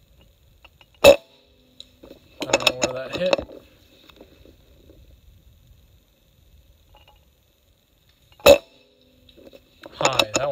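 Umarex Gauntlet PCP air rifle firing twice, two sharp cracks about seven seconds apart, the first about a second in and the second near the end.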